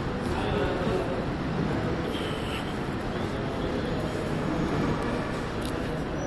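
Outdoor crowd ambience: a steady background din with faint, indistinct voices in the distance.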